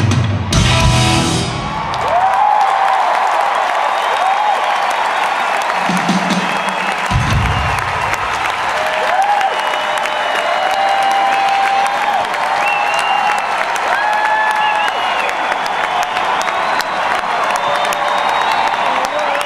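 A live rock band with electric guitar and drums plays its final chord, which cuts off within the first two seconds. A large arena crowd then claps and cheers, with shrill whistles and whoops sliding up and down over the applause, and a brief low tone about six to seven seconds in.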